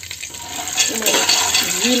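Whole almonds and cashews clattering against a steel pot as they are stirred with a metal ladle in ghee for dry roasting, starting about half a second in.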